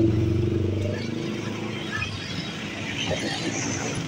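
Motorcycle engine running steadily while riding through city traffic, its hum loudest in the first second and then easing off into general road noise.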